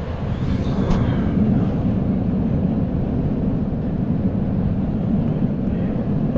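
Steady low whirring rumble of a ceiling fan.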